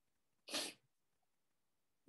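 A single short, sharp breath sound from the lecturer, about half a second in, quieter than his speech.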